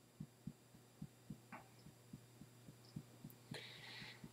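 Faint, soft thuds of fingertips tapping on the chest at the collarbone, evenly paced at about three to four taps a second: EFT tapping on the collarbone point.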